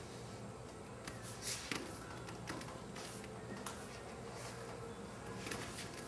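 Thin aluminium rudder leading-edge skin being rolled by hand around a PVC pipe: faint creaks and a few sharp ticks from the bending sheet over a low steady hum.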